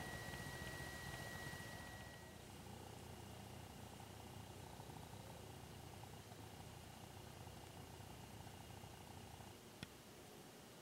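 Near silence: a faint low hum and hiss of background noise, with a thin steady high tone that stops about two seconds in and a single click near the end.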